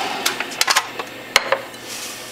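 Several sharp clicks and clinks, the loudest about halfway through, as a small glass beaker is taken from under the press juicer and set down on the countertop. The juicer's motor hum dies away at the start.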